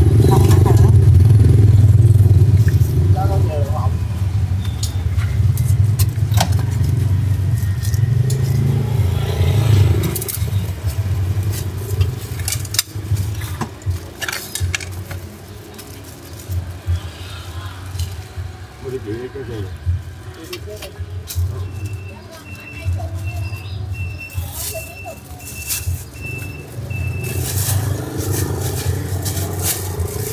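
Motorbike engines running close by in street traffic, a low rumble that is strongest in the first third and again near the end. It is mixed with background voices and scattered clicks. A row of short, evenly spaced beeps sounds about two-thirds of the way in.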